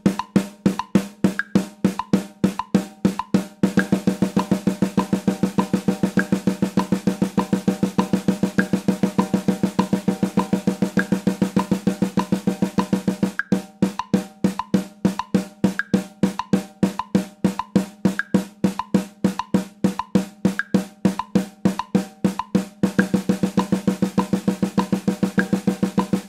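Snare drum of an acoustic drum kit played with sticks in a steady, unbroken stream of strokes. Separately struck, accented strokes alternate with stretches of dense roll-like strokes: one for about ten seconds starting around four seconds in, and another near the end. This is plausibly a steady-tempo timing exercise at 100 bpm.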